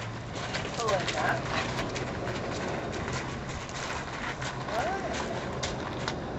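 Hooves of a Lusitano mare stepping and shuffling on gravel, a string of irregular knocks and crunches.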